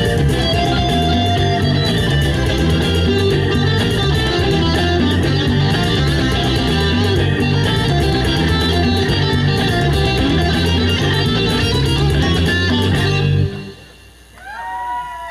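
A live band plays an instrumental passage: electric guitars over a low, repeating bass line and a Hammond organ keyboard. The music stops abruptly just before the end as the song finishes.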